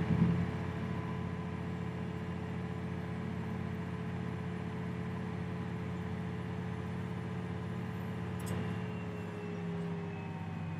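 John Deere tractor diesel engine heard from inside the cab, running steadily at high speed, about 2150 rpm, after PTO load anticipation has ramped it to maximum rpm on PTO engagement. The engine note eases slightly lower near the end.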